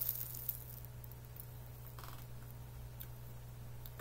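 Seaweed snack being handled and chewed, heard only faintly as a few small clicks and a brief soft rustle about halfway through. Under it runs a steady low hum.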